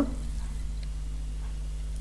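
Steady low electrical hum, with one faint click of wooden knitting needles a little under a second in.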